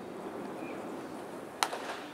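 Quiet outdoor ballpark ambience, broken once about one and a half seconds in by a single sharp knock with a brief ringing tail.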